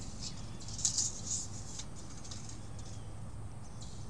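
A few short scraping, rattling handling sounds, loudest about a second in, over a low steady outdoor hum, as a man climbs onto a trampoline and pulls out a tape measure.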